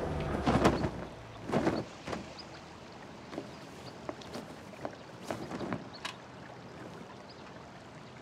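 Scattered light knocks and clatters, about a dozen spread over the first six seconds, over a faint steady background.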